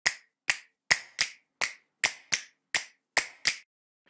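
Ten sharp, snap-like clicks in a loose rhythm, a little under half a second apart, with silence between them: a percussive sound effect for an animated intro title.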